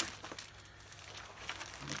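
Opened cardboard box of Canon glossy photo paper being handled and opened up: quiet rustling of cardboard and paper with a few light taps and clicks.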